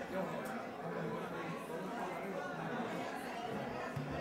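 Audience chattering among themselves at a low level: many overlapping voices with no single speaker standing out.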